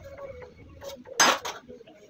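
Loose metal tools and parts clinking together as they are handled on a hard floor, with one loud short clatter just after a second in and lighter clinks around it.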